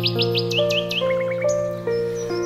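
Bird chirping laid over a slow instrumental backing track: a quick run of about seven high chirps, then a few lower falling notes about a second in, over sustained held chords.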